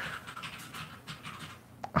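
A man breathing faintly and close to the microphone in a pause between sentences, over low room noise, with a small click near the end.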